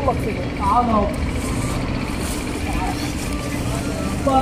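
Steady low outdoor rumble, with a man shouting a short phrase about a second in and faint speech near the end.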